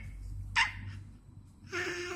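A baby vocalizing: a short, sharp squeal about half a second in, then a pitched babbling sound starting near the end.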